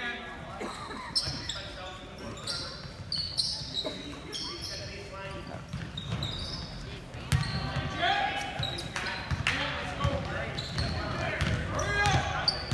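A basketball game on a hardwood gym floor: the ball bouncing, sneakers squeaking in short high chirps, and players and spectators calling out, all echoing in the gym. The loudest sound is a sharp thud about seven seconds in.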